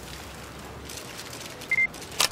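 A single short, high electronic beep from a smartphone camera near the end, over a faint steady background hiss.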